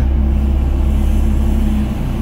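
Doosan DX55 mini excavator's diesel engine running steadily under working load, a loud low rumble heard from inside the operator's cab, dipping slightly near the end.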